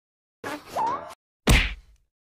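A short vocal sound rising in pitch, then about one and a half seconds in a single loud cartoon whack sound effect with a deep tail that dies away quickly.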